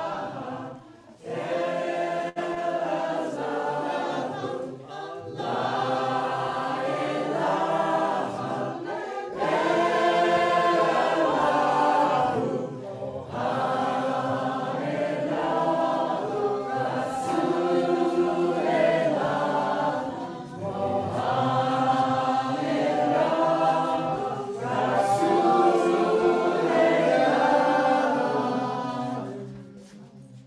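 A group of voices singing a Sufi zikr chant together, in sustained phrases of about four seconds each with brief breaks between them.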